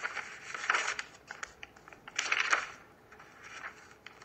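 Rustling and scratching handling noise in two main bursts, the louder about two seconds in, with a fainter rustle near the end.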